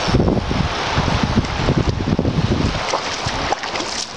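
Wind buffeting the microphone in loud, irregular low rumbles.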